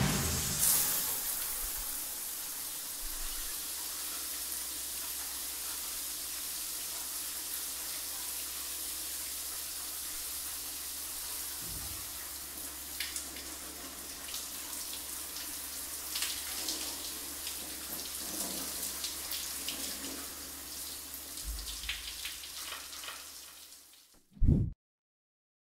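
Shower running: a steady hiss of water spraying from a shower head, fading away near the end, with a few light knocks and clicks in the second half.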